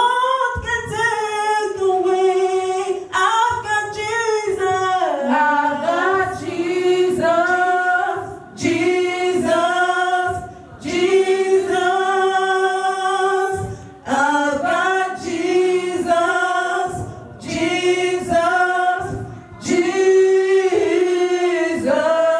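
A small group of women singing a gospel song unaccompanied into microphones, in long held phrases with short breaks between them.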